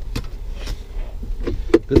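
A few sharp clicks and knocks from hands handling a car's interior trim, over a low steady rumble.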